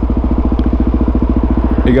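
Suzuki DRZ400SM's single-cylinder four-stroke engine idling with a steady, even beat, heard close from the rider's seat.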